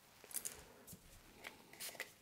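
A few faint, short scrapes and rustles of hands pressing a fondant piece onto wooden skewers.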